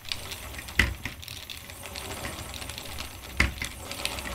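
Wooden treadle spinning wheel running, with a steady low rumble, light ticking and two knocks about two and a half seconds apart, as it twists drafted wool roving into a single.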